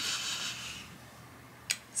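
Chalk drawn across a fabric patch: a soft, scratchy rubbing that fades out within the first second.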